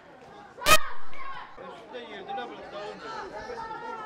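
Voices of young football players and onlookers calling out and chattering across the pitch. A single sharp knock, the loudest sound, comes a little under a second in.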